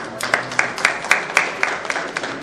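A small group of people clapping by hand, separate claps at about four a second rather than a dense round of applause.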